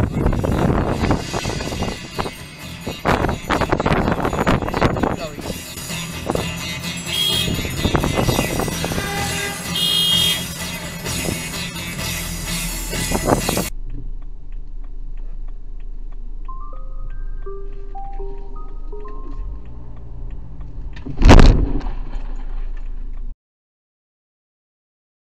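Loud street and traffic noise with voices, which cuts off abruptly to quieter background music. Near the end there is one sharp, very loud bang.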